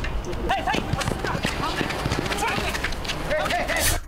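Pitch-side sound of an amateur football match on artificial turf: players' distant shouts and calls over a scatter of sharp knocks and taps.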